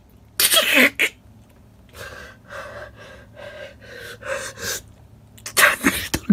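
A man doing push-ups close to the microphone, huffing and grunting with forceful breaths. One loud burst comes about half a second in, then a run of quieter strained breaths, and loud bursts again near the end.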